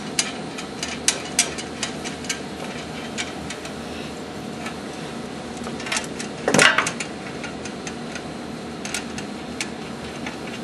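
Small, irregular clicks and taps of metal hardware as a fixed wall laser is fitted to its mounting holes and its screws are started, over a steady room hum. A louder scrape comes about six and a half seconds in.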